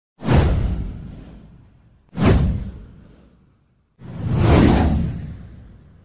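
Three whoosh sound effects from an animated title intro: the first two strike suddenly about two seconds apart and die away over a second or so, and the third swells up more slowly near four seconds in before fading.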